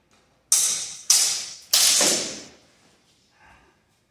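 Steel longsword blades clashing three times in quick succession, about half a second apart, each clash ringing and dying away; the last rings longest.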